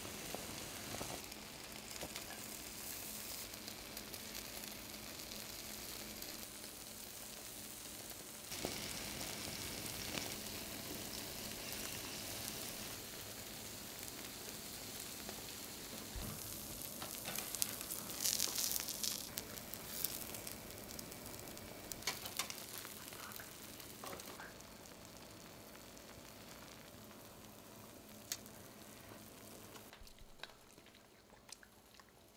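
Scallops and their juices sizzling in the shells on a wire grill over a portable gas stove's flame, with light crackles. The sizzle grows louder with pops a little past halfway, then dies down over the last several seconds.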